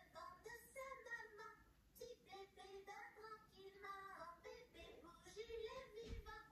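A high, child-like puppet voice singing faintly, heard through a television's speaker.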